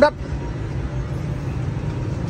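Steady low rumble of distant road traffic, with no distinct events.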